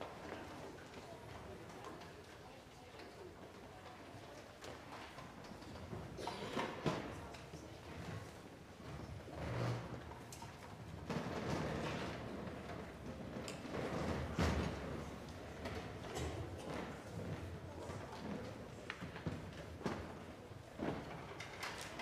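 Scattered knocks and thuds of chairs and music stands being moved as a band sets up on stage, over a low murmur of voices in the hall.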